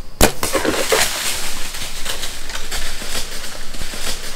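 A sharp crack about a quarter second in, the shot of a compound bow and the arrow striking a whitetail buck at close range, followed by a few seconds of crashing and crackling in dry leaves and brush as the hit buck runs off.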